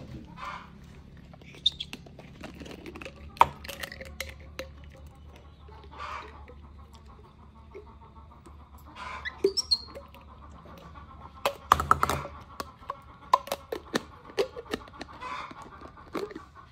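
Baby monkeys suckling from plastic milk bottles: scattered sharp clicks and smacks, with a few short high chirping calls, one rising in pitch about halfway through.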